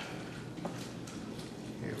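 Water pouring steadily from a plastic jug into a plastic fermenter bucket and splashing onto foamy wort, as the wort is topped up with water.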